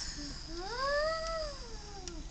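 A single long meow-like call, rising then falling in pitch, lasting over a second.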